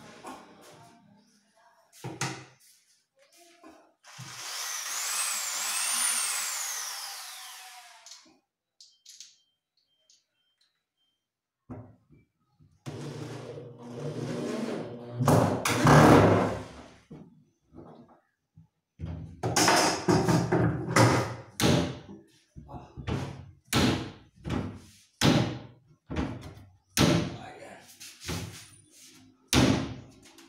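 Corded electric drill running into a plywood cabinet frame, its high whine rising and falling in pitch. Later comes a long run of sharp knocks and thunks, one or two a second.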